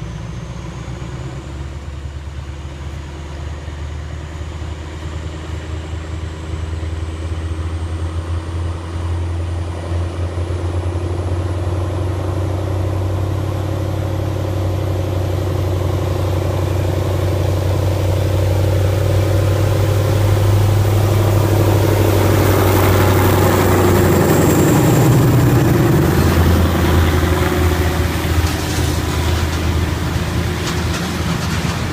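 TCDD DE 24000-class diesel-electric locomotive working hard as it pulls a heavy freight train away uphill. Its engine grows steadily louder as it approaches, is loudest as it passes about two-thirds of the way in with a slight drop in pitch, and tank wagons start rolling by near the end.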